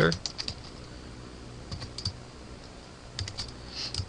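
Computer keyboard typing: sharp key clicks in short runs, a few near the start, a couple around two seconds in, and a quick run near the end, with quiet gaps between.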